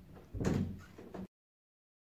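A single knock or bang about half a second in that fades quickly, after which the sound cuts off abruptly to dead silence.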